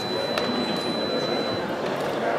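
Electronic fencing scoring machine giving one steady high beep that cuts off a little past the middle, over the background noise of a sports hall, with a sharp click about half a second in.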